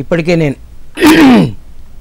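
A man's voice says a few quick syllables, then about a second in gives a loud, harsh throat clear lasting about half a second, its pitch falling.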